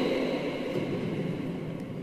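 A short pause in a man's speech in a large church: the echo of his voice fades slowly over a steady background hiss of room tone.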